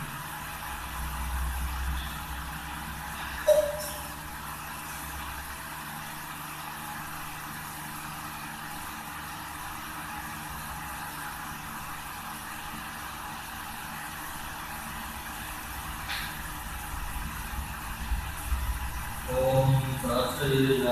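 A steady machine-like hum and hiss, with one sharp metallic clink about three and a half seconds in, like a brass puja vessel being set down, and a faint click later on.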